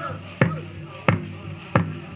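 Powwow drum for a women's jingle dress song, struck in a steady beat: three strikes about two-thirds of a second apart, between the singers' phrases. A faint voice trails off at the start.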